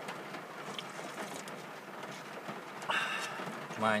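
A person sipping hot broth from an instant miso cup ramen, a short slurp about three seconds in, over a steady low hiss.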